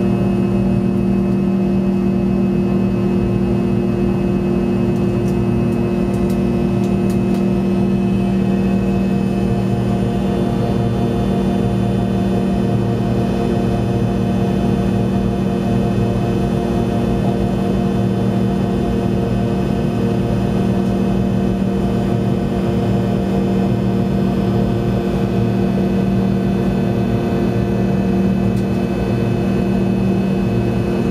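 Steady drone of a jet airliner's cabin during the climb after take-off: engine hum with several steady low tones over airflow noise.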